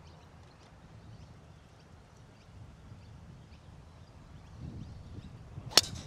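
A golf driver striking a teed-up ball: one sharp crack near the end, after several seconds of faint wind noise on the microphone.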